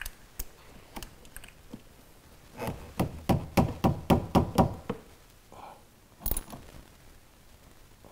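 Hand tools working a car battery's negative terminal clamp onto its post: a few light clicks, then a quick run of about ten knocks over about two seconds, and one sharp click about six seconds in.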